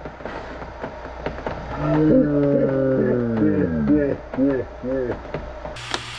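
Slowed-down playback of people's voices: long, deep, moaning tones that slide down in pitch, then a run of short rising-and-falling calls like exclamations or laughter in slow motion. Normal-speed sound comes back just before the end.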